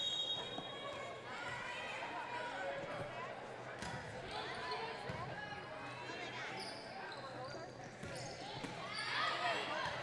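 Volleyball rally in a gymnasium: a short high referee's whistle at the very start, then a few sharp thuds of the ball being served and struck. Players' calls and crowd chatter run underneath.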